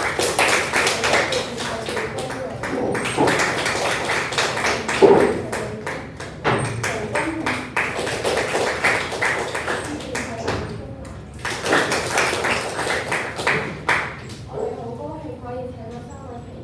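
Applause from a small group clapping by hand for about ten seconds, then a second short round after a brief pause. Voices are heard over the clapping, and a voice begins speaking near the end.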